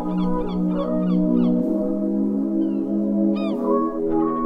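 Background music: held chords that shift every second or two, with a quick repeating high chirping figure over the first second and a few high sliding notes near the end.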